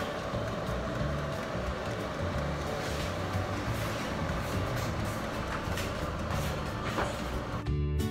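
Hooded salon hair dryer running with a steady blowing whir, with music carrying a steady bass beat behind it; both cut off abruptly near the end.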